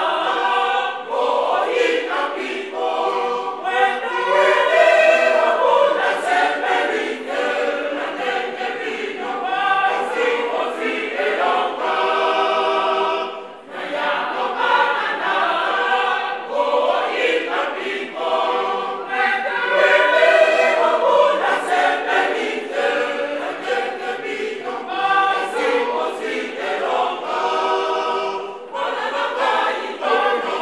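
Church choir of men, women and girls singing together in phrases, breaking briefly about halfway through and again near the end.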